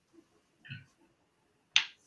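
Mostly quiet, with a faint brief sound about two-thirds of a second in and then a single sharp click near the end.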